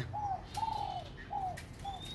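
Spotted dove cooing: four short, arched coo notes, the second held longest.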